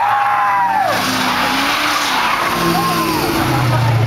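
A car doing a burnout: its tires spin and squeal with a loud hiss from about a second in, while the engine revs up and down underneath.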